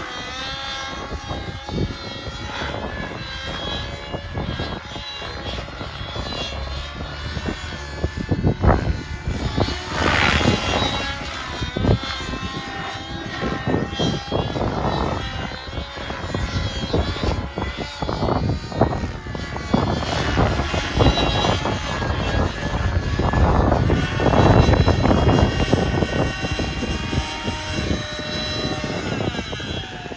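Radio-controlled helicopter flying aerobatics. The pitch of its motor and rotor rises and falls continually, with louder swells about a third of the way in and again past the middle. Near the end it comes down to hover low over the grass.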